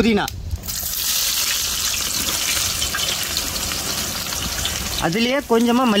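Sliced small onions dropped into hot oil in a large cooking pot. A sudden loud sizzle starts about half a second in and carries on steadily as they fry.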